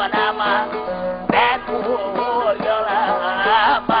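Turkish aşık folk music: a plucked long-necked saz (bağlama) plays steady held notes under a wavering, ornamented melody line.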